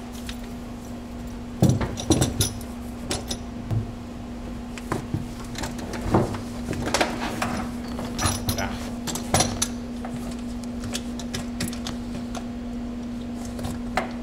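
Floor-mounted three-pedal box being set down and shifted about on the car's floor: a run of metal clunks, clinks and rattles that thins out after about nine seconds. A steady low hum runs underneath.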